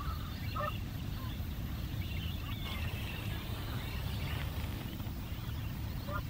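Several birds calling across a lake: high, repeated chirps and short gliding calls, with a couple of lower, fuller calls about half a second in, over a steady low rumble.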